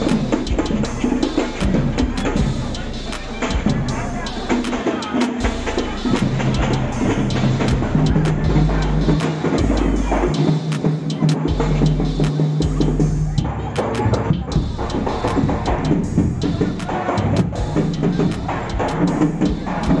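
Loud music with a drum beat and a deep bass line holding long notes, with voices of a crowd mixed in.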